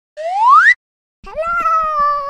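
Cartoon sound effects: a short upward pitch sweep of about half a second, then, after a brief gap, a pitched tone that rises quickly and holds level, starting a little past a second in.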